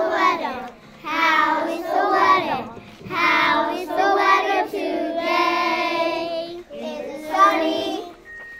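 A class of young children singing a song together in a series of short phrases, with a longer held stretch past the middle.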